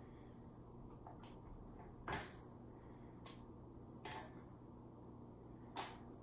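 A few short, quiet knocks and scrapes of a spoon against a stainless mixing bowl as thick batter is spooned into a loaf tin, the loudest about two seconds in.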